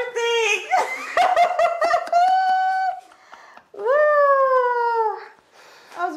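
A woman laughing and letting out high, drawn-out exclamations, ending in one long falling 'ooh' about four seconds in.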